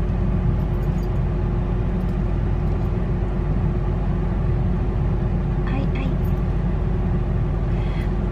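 Steady low rumble of a car idling, heard from inside the cabin, with a faint constant hum over it. A woman cries out briefly near the end.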